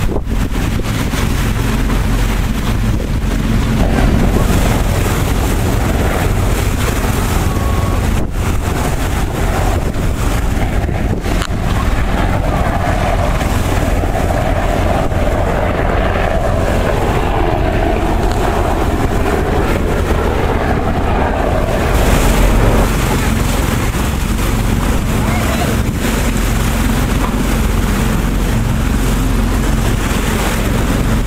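A boat's motor running steadily under way, with wind buffeting the microphone.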